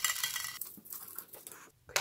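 Fine granite grit (masa) poured from a small plastic spoon onto a succulent pot's soil as topdressing: a gritty, clinking trickle that dies away about half a second in, then a few faint ticks and one sharp click near the end.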